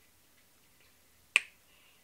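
A single sharp click about one and a half seconds in, short and dry with a quick fade, against faint room tone.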